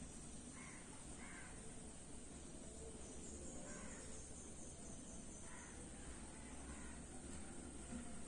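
Quiet background hiss with a few faint, short bird calls from a distance, spaced a second or more apart, under soft pencil strokes on paper.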